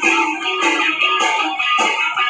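Hard rock music with guitar and a steady beat of cymbal hits about twice a second, in a short instrumental passage between sung lines.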